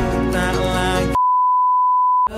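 Background music with singing, cut off about a second in by a steady, single-pitched test-tone beep of the kind played with TV colour bars, used as a transition effect.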